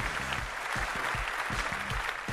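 Audience applauding, with the tail of a radio jingle's music playing underneath.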